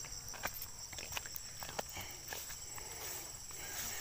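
Faint footsteps on a dirt footpath, soft irregular steps, over a steady high chirring of insects.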